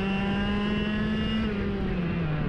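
IAME X30 125cc two-stroke kart engine running hard, heard onboard as a steady high-revving note. The pitch creeps up slightly and then drops a little near the end as the kart turns into a corner.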